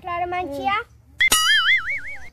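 A child speaks briefly, then a sudden twang sets off a bright ringing tone that wobbles up and down in pitch for about a second: a cartoon-style 'boing' comedy sound effect.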